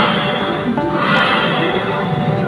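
Loud recorded animal calls from a themed restaurant's sound system, with two cries, one at the start and one about a second in, played over background music.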